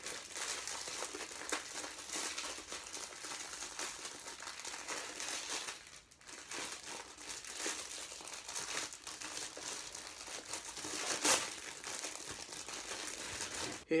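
Thin clear plastic wrapper crinkling continuously as it is worked in the hands around a small plastic action figure, with a short lull about six seconds in and one louder crackle about eleven seconds in.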